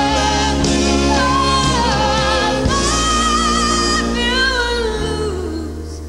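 A woman singing a slow rock ballad live with her band, holding long notes with vibrato over bass, keyboard and drums; near the end a note glides downward and the music briefly thins and quiets.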